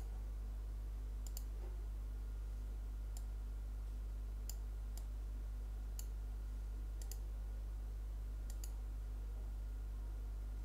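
Computer mouse buttons clicking about a dozen times at irregular spacing, some as quick double clicks, as sliders are adjusted in 3D modelling software. A steady low electrical hum runs underneath.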